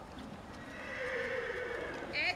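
A horse whinnying once for about a second, starting a little way in, over the hoofbeats of a pony trotting on the arena surface.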